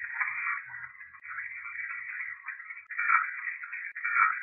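A recording played back through a Panasonic IC recorder's small built-in speaker: a tinny, hissing, wavering noise that swells and fades, loudest in surges near the end. The uploader takes it for spirit voices saying 'his werewolf' and 'hunted'.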